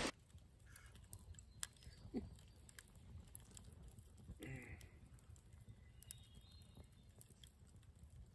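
Very faint crackling of a small wood campfire: scattered quiet pops and ticks, near silence overall. Two brief faint calls come through, about two seconds in and again about four and a half seconds in.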